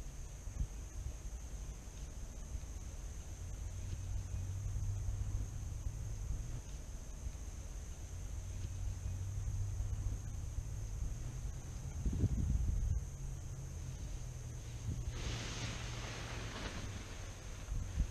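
Low, steady drone of a distant paramotor engine, with a gust of wind on the microphone about twelve seconds in. Near the end comes a rustling hiss as a paraglider wing is raised into the air nearby.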